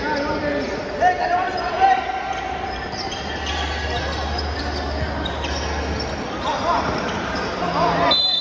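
A basketball being bounced on a hard tiled floor, with sharp bounces about one second in and again near two seconds, amid players' shouts.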